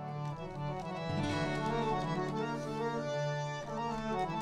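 Harmonium playing held, reedy melodic notes that shift in pitch every second or so.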